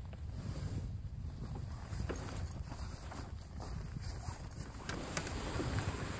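Wind buffeting the microphone in a steady low rumble, with faint rustling and a few soft knocks as the nylon fabric and frame of a flip-over ice shelter are handled.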